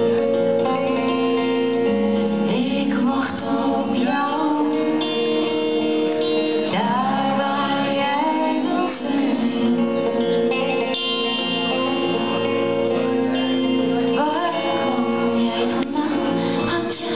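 A woman singing a Dutch-language song live into a microphone, backed by a band.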